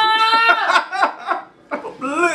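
A high-pitched squeal of about half a second, then a string of short giggles.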